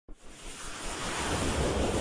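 Rushing, wind-like whoosh sound effect of an animated logo intro, starting just after the opening and growing steadily louder.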